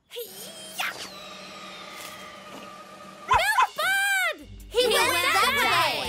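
Cartoon sound effects over light background music: a quick whoosh, then a long falling whistle as a thrown ball sails away. Cartoon voices follow with wordless exclamations, one long one in the middle, then several overlapping near the end.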